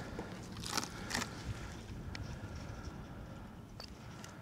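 Gloved hands handling a handheld wood moisture meter: two brief scratchy rustles about a second in, then a couple of faint clicks, over a low steady rumble.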